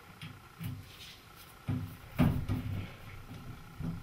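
Soft handling sounds as PTFE plumber's tape is snipped with scissors and pressed onto the threads of a metal shower arm, with one sharper click about two seconds in.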